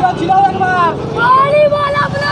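Road traffic with motorcycle engines running close by, a steady low rumble, with people's voices over it.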